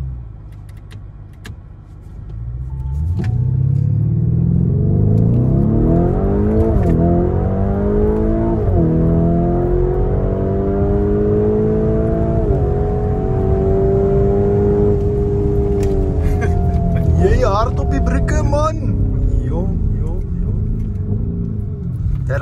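Lamborghini Urus S twin-turbo V8 heard from inside the cabin, pulling hard from a standstill: the engine note climbs, dips sharply at three quick upshifts, holds high, then drops away as the driver lifts off near the end.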